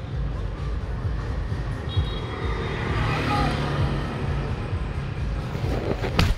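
Street traffic: a steady low rumble, with a vehicle passing that swells and fades between about two and four seconds in.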